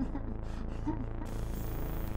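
A man laughing quietly, a few short chuckles in the first second, over a steady low hum.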